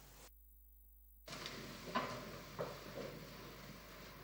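Faint rustling of book pages being turned, with soft shuffling and a few light knocks, as psalm books are opened. The sound drops out almost entirely for about a second near the start, then the rustling resumes.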